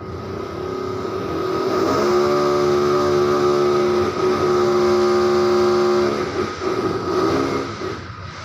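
A motor running with a steady pitch: it builds up over the first two seconds, holds steady, then wavers and cuts off abruptly at the end.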